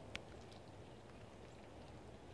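Near silence: faint outdoor ambience, with a single brief tick just after the start.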